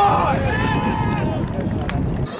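Several voices shouting and calling indistinctly over one another on a lacrosse field, over a steady low rumble. A short sharp click comes near the end.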